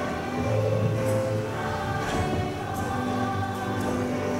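Background music with a choir singing, steady throughout.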